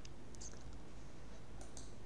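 A few light clicks from a computer mouse, spread over the two seconds, against a steady low hum.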